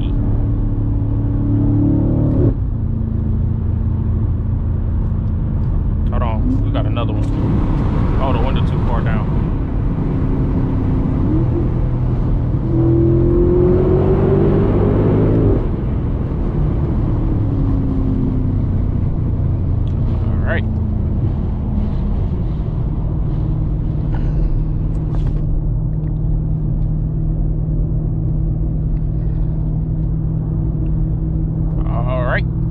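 BMW F90 M5 Competition's twin-turbo V8, heard from inside the cabin while driving. Its note shifts up and down with gear changes: a rising pull about halfway through ends in a sudden drop, and it settles into steady cruising over the last third.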